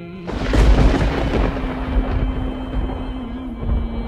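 Cinematic logo-intro music: a sudden deep boom about a third of a second in, then a low rumble under a single held drone note.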